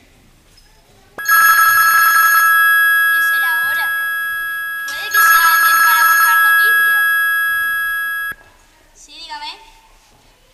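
A telephone ringing twice: a loud bell ring lasting about four seconds, then a second of about three seconds that cuts off suddenly. It is an incoming call, picked up after the second ring.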